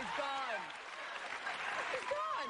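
Studio audience applauding under talk-show speech; the talk drops out after the first second while the applause carries on.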